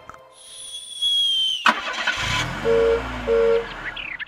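Cartoon sound effects: a high whistling tone that falls slightly and stops with a click, then a car engine starting and running. Near the end come two short, evenly pitched horn beeps.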